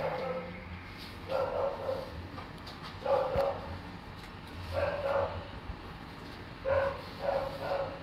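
A dog barking, five barks spaced one to two seconds apart.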